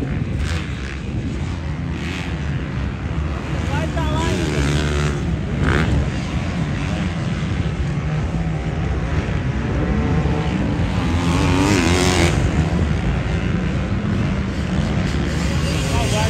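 Several motocross dirt bikes racing on a track, engines revving up and down as riders work the throttle and gears over the jumps and turns, over a steady drone from the other bikes.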